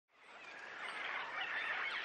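Wild birds calling over one another in the bush, a busy chorus of short chirps and trills fading in over the first half second.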